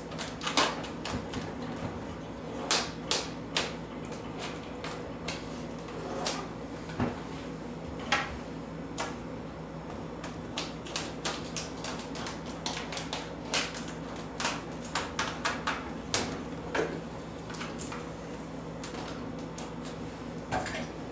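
Vinyl wrap film crackling and ticking in irregular sharp clicks as it is handled and pressed around the edge of a refrigerator door, over a steady low hum.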